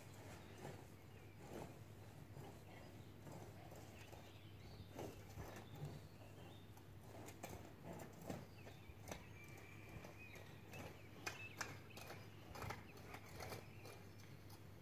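Long-handled garden hoe chopping and scraping through weedy soil: faint, irregular knocks and scrapes, several a second.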